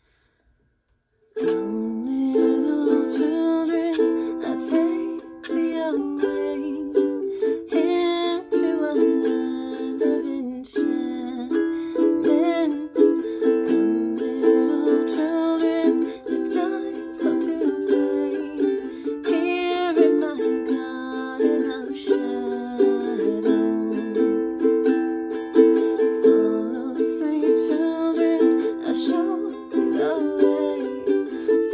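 Ukulele strummed through a minor-key chord progression (A minor, C, G, D minor), starting suddenly about a second and a half in after a brief hush, with a woman's voice singing along softly.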